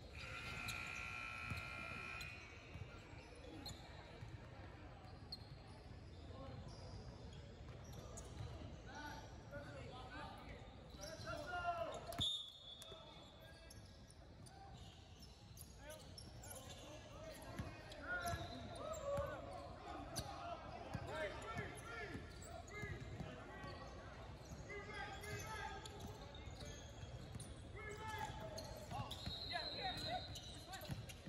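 Gym sounds of a basketball game: the ball dribbling on the hardwood floor, with players and people on the sidelines calling out in an echoing hall. A short, high whistle sounds about twelve seconds in and again near the end.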